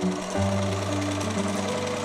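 Sewing machine stitching, heard over background music with sustained low notes.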